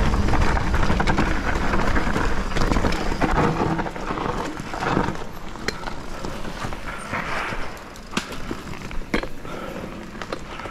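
Vitus Sentier 27 VR mountain bike rolling fast over a dirt woodland trail: tyre noise and wind rumble on the camera, loud for the first four seconds and then easing as the bike slows. A few sharp clacks of the bike rattling over bumps come in the second half.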